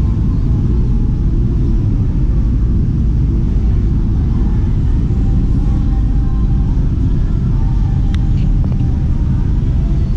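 Wind buffeting the camera's microphone, a steady low rumble.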